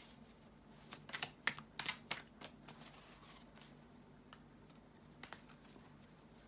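A deck of tarot cards being handled by hand: a quick run of faint, sharp clicks and taps about a second in, thinning to a few scattered clicks later.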